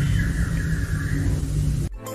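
A steady low rumble with a faint falling whine, like a motor vehicle running nearby, cutting off suddenly just before the end.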